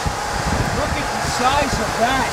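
Storm wind buffeting the camera's microphone, an uneven low rumble with a hiss over it.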